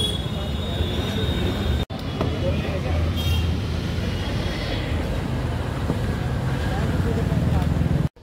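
Street traffic noise: a steady low rumble of passing engines with a brief high-pitched tone about three seconds in. The sound cuts out for an instant about two seconds in.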